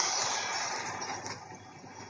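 Action-film trailer soundtrack played through the GPD Pocket's small built-in speaker: a loud rushing burst of noise that fades steadily over the two seconds.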